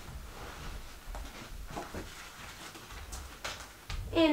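Faint rustling and a few soft bumps of pillows and bedding being moved and set in place on a bed.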